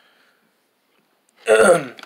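Near silence, then a man clears his throat once, short and loud, about one and a half seconds in.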